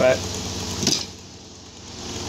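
A spoken word ends at the start, then a pause filled by a low, steady electrical hum, with a short soft click about a second in.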